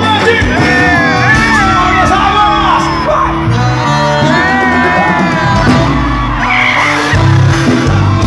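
A live band playing loudly, with a male vocalist singing a melody over bass, keyboard and horns.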